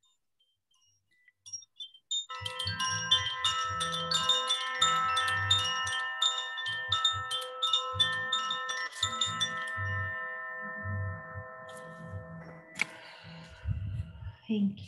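A hand-held chime hanging from a cord is shaken, giving a quick run of bright tinkling strikes, about three a second, over several overlapping pitches. The ringing then fades away, marking the close of a guided meditation.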